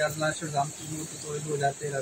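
Insects chirring: a steady, high-pitched drone, under a man speaking quietly in the background.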